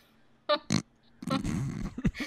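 A person's voice making non-speech noises: two short, sharp sounds about half a second in, then a low, rough vocal noise lasting most of a second.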